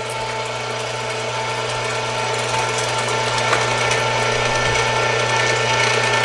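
Electric meat grinder running steadily while seasoned pork is pushed through it, a steady motor hum and whine growing slightly louder as the meat is fed in.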